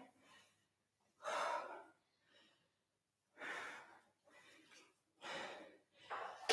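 A woman's faint, heavy breathing from the exertion of goblet squats: three breaths out, about two seconds apart.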